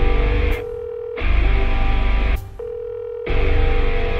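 Instrumental heavy metal passage in stop-start bursts: heavy blocks of about a second with low, hard-hit guitar and drums, broken by quieter gaps in which a single steady high note holds.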